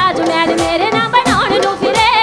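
Live Punjabi song: a woman singing an ornamented, wavering melody over a band with dhol and drum kit.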